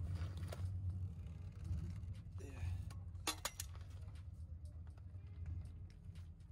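Metal clicks and clinks of a socket wrench and breaker bar working the rear brake caliper bolts, with a few sharp clinks about three seconds in, over a steady low hum.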